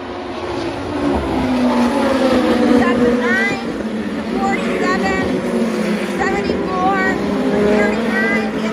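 Midget race car engines running at racing speed on a paved oval, cars coming through the turn. One engine note drops in pitch as a car goes by about a second or two in.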